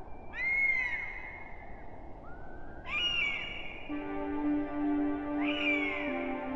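Three drawn-out animal calls, each rising and then falling in pitch, over a soft hiss, the first the loudest; soft ambient music with long held notes comes in about four seconds in.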